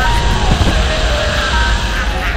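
Cartoon music score playing over a steady rushing noise from a cartoon vacuum machine blowing out a billowing cloud.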